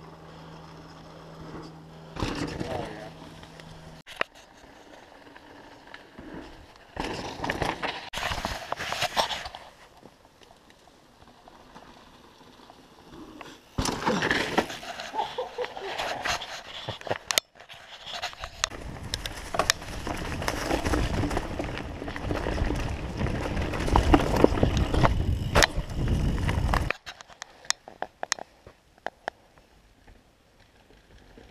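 Mountain bike rolling fast over a dirt forest trail, picked up by a camera mounted on the bike: tyre rumble, rattling and wind noise with many sharp knocks. This is loudest in the last third and cuts off abruptly near the end. Shorter noisy stretches come earlier.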